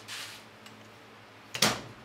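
A vz. 61 Skorpion machine pistol set down on a workbench: one sharp, loud clack about a second and a half in, after a softer rustle of handling at the start.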